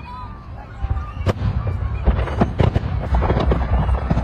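Aerial fireworks going off: a sharp bang about a second in, then a quick run of bangs and crackles that grows denser and louder toward the end, over a low rumble.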